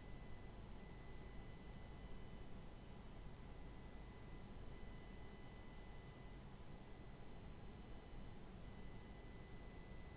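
Near silence: a faint, steady hiss with a few faint high steady tones, unchanged throughout.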